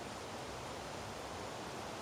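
Steady outdoor background noise: an even hiss with no distinct sounds in it.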